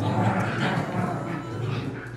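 Two small dogs play-fighting, one of them a puppy, growling and yapping in a rough, continuous scuffle.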